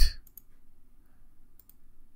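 Computer mouse button clicks: a sharp click right at the start, then a faint pair about a third of a second in and another pair near the end.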